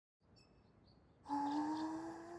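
Faint birds chirping as background ambience, then about a second and a half in a much louder held tone starts, rising slightly in pitch.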